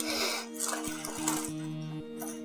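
Background music with held notes, over the crackling rustle of a plastic bag of clothes being handled, in two spells in the first second and a half.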